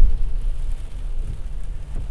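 Car cabin noise: a steady low rumble with a faint even hiss of rain on the car, and a low thump right at the start.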